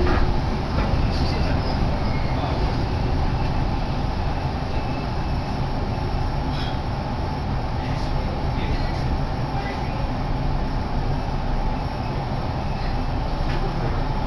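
Kintetsu Nagoya Line commuter train pulling into a station, heard from inside the car: steady running noise with a few faint clicks.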